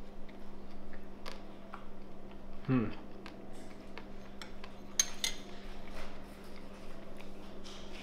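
A metal spoon clinking a few times against a ceramic bowl, the sharpest clink about five seconds in, with a short ring after it. A brief 'hmm' about three seconds in, and a steady low hum underneath.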